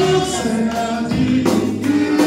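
Gospel worship singing: a woman's amplified voice leads held, sliding notes while a congregation sings along, with a couple of percussion hits in the second half.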